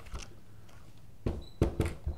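A few sharp metal clicks from the bolt-release lever and bolt of a Sportco (Omark) Model 44 7.62 NATO target rifle as the lever is pressed through the porthole in the rear sight base to release the bolt. There is one faint click at the start, then three quick clicks in the second half.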